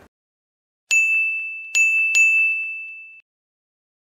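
Logo-sting sound effect: three bright bell-like dings, about a second in, then two more close together, each ringing on the same high tone and fading. The ringing cuts off about three seconds in.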